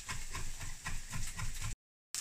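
Kitchen knife chopping basil on a wooden chopping board: quick, even knocks about five a second over a faint hiss, cutting off abruptly just before the end.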